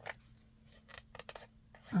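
A hand moving over the pages of an open book, making a few light, short paper rustles and taps.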